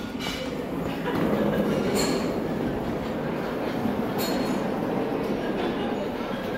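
Hard wheels of a rolling suitcase rumbling steadily across a marble floor, with a few sharper clicks over the seams.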